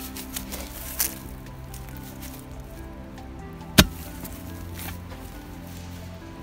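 Background music with held tones, over which a heavy steel tamping bar strikes down into the ground onto a tree root twice: a lighter hit about a second in and a sharp, much louder one a little past the middle.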